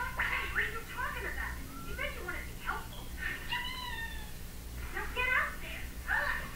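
Cartoon soundtrack played on a TV across a small room: a run of short, high-pitched squeaky calls and voices that glide up and down, like cartoon critters or cat-like mewing.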